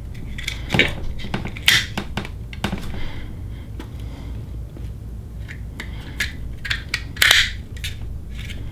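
Hands handling a plastic fuse holder and a small inline current/voltage meter: irregular clicks, taps and rubbing, with a few louder scuffs, over a steady low rumble.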